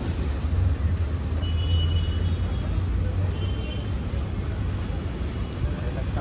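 Street traffic with a steady low engine rumble from a vehicle close by.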